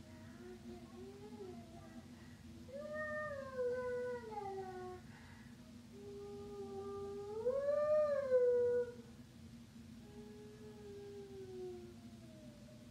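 A high voice slowly sings an improvised lullaby on 'la' in four separate phrases of long notes that glide up and down, over a steady low hum.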